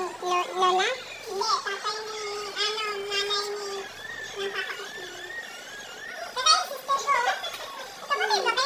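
Children talking and playing, with one high child's voice held for about two seconds.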